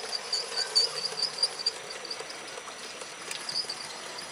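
7mm-scale model train, a Heljan Class 40 diesel hauling wagons, rolling past on an outdoor track: a steady hiss of wheels on the rails with a run of short high-pitched ticks and chirps.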